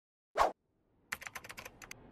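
Typing on a computer keyboard: a quick run of about seven keystrokes, ending as a Midjourney /imagine command is sent. Shortly before the typing there is one louder short tap.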